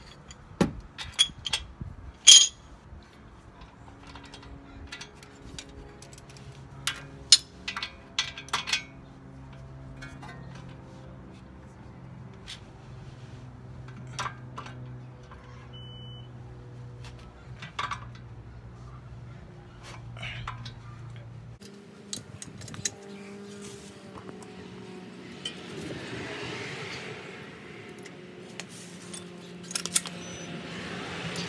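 Metal hand tools clinking against a car's brake caliper while its mounting bolts are fitted and tightened. Sharp clinks come in clusters over the first nine seconds and then sparsely, over a faint steady low hum.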